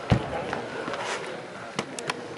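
A futsal ball kicked hard just after the start, a sharp thump that echoes through the hall, then a lighter knock near the end, under the murmur of players' voices.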